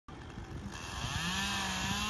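A motor running in the background, its pitch rising about a second in and then holding steady.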